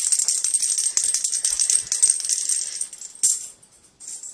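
Rapid metallic jingling, like a small bell being shaken hard, running continuously for about three seconds, fading, then one more short jingle just after three seconds in.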